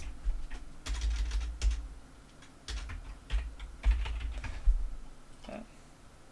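Typing on a computer keyboard: a run of irregular single keystrokes, each a sharp click with a dull thud beneath it, as a material name is entered.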